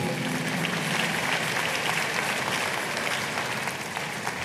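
Large congregation applauding in a big hall: a dense, steady clapping that eases a little toward the end.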